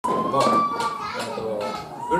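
Mostly speech: a man talking into a PA microphone, with a steady high-pitched tone running under his voice.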